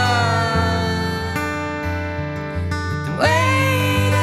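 Live acoustic song: an acoustic guitar playing chords under a man's voice holding a long sung note that fades away, then a new sung note sliding up into pitch about three seconds in.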